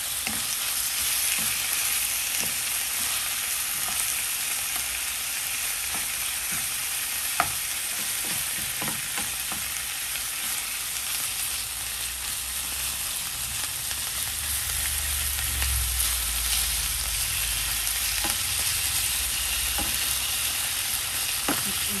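Chicken breast pieces sizzling in hot oil with onion and garlic in a coated frying pan. A steady hiss runs throughout, while a wooden spatula stirs and taps against the pan now and then, with one sharper knock about seven seconds in.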